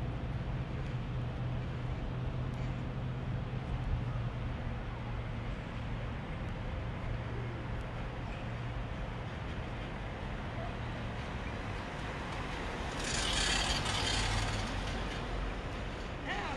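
Steady low hum of road traffic and motors. A louder rushing hiss comes in for about two seconds near the end.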